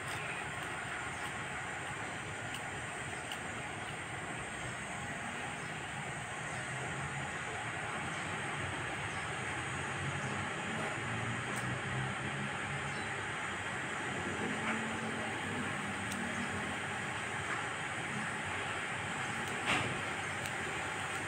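Steady wind noise in the open air, an even hiss with no speech and a few faint low sounds in the middle.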